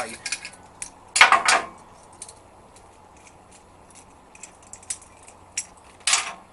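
Metal parts of a brake-line flaring tool clinking and rattling as they are handled, with one loud rattle about a second in and light scattered clicks after it.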